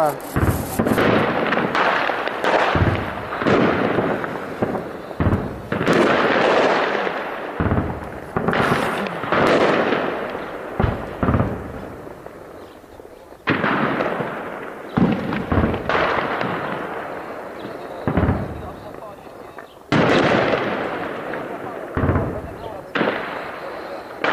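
Heavy gunfire and explosions from an armed clash: about a dozen loud, sudden reports at irregular intervals, each trailing off in a long echo.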